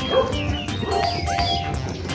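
Short high-pitched animal calls over background music.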